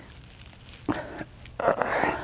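A man laughing briefly in two short bursts, a small one about a second in and a louder one near the end.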